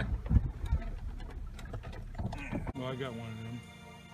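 Jeep Wrangler engine and trail rumble heard inside the cabin, with a few brief voice sounds, cutting off about three seconds in as background music begins.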